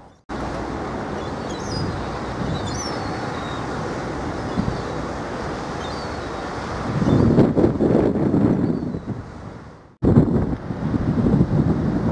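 Wind buffeting the microphone, with a steady rushing noise and heavier gusts from about seven seconds in and again after a cut near ten seconds. Faint gull cries are heard about two seconds in.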